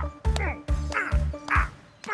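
Cartoon soundtrack music with a deep bouncy bass beat, with a squawk-like comic sound effect that falls in pitch and repeats about twice a second, and sharp clicks between the squawks. The bass drops out near the end while the falling squawks go on.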